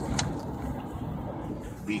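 Car interior noise while driving slowly: a steady low engine and road rumble, with one short click just after the start.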